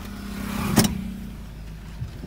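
Hyundai Verna's engine idling in neutral, heard from inside the cabin as a steady low hum. A single sharp click sounds just under a second in.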